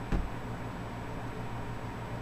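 Steady low room hum, with one short low thump just after the start.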